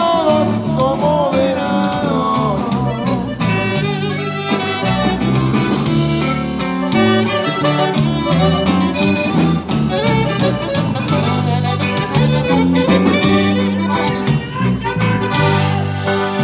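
Conjunto band playing a corrido live in polka time. This is an instrumental passage between sung verses, with accordion leading over bajo sexto and bass.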